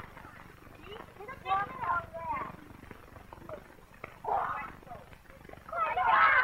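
Children's voices calling out in short, high, indistinct bursts, with quieter gaps between.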